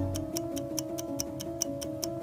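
Clock-like ticking, about five ticks a second, over soft music with a few long held notes. A deep bass note fades out just after the start.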